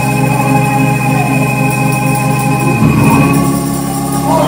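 Electronic keyboard holding sustained organ chords, moving to a new chord about three seconds in.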